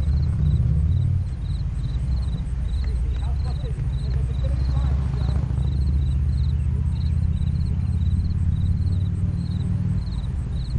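Wind buffeting the microphone as a steady low rumble, with faint distant voices and a faint high chirp repeating about twice a second.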